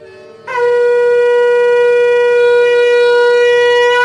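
Conch shell (shankha) blown in one long, loud, steady note, starting about half a second in with a short upward swoop into the pitch.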